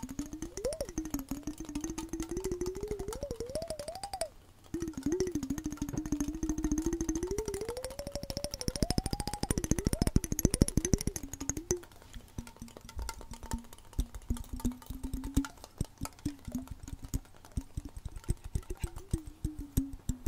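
Rapid fingernail and fingertip tapping on a hand-held cylindrical container, in many quick clicks with a brief pause a little over four seconds in. Background music with a wavering tone runs beneath the tapping.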